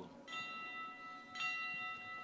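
Altar bell struck twice, about a second apart, each stroke ringing on in several clear, steady tones that slowly fade. It is the bell rung at the epiclesis, as the celebrant begins to call down the Spirit on the bread and wine.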